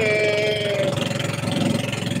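Outrigger boat's engine running steadily under way, a fast, even run of firing pulses. Over it, a voice holds a drawn-out hesitant 'ehh' for a little under a second.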